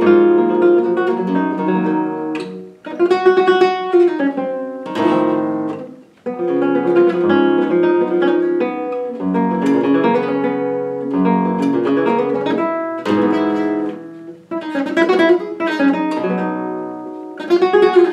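Solo flamenco guitar playing a minera: ringing chords and picked melodic phrases with bursts of strumming. The sound dies away briefly three times between phrases.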